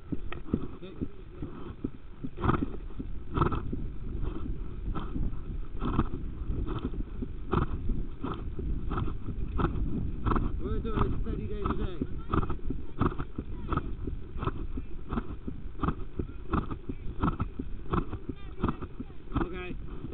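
A horse at exercise, breathing and striding in an even rhythm of about three beats every two seconds, over a steady low rumble.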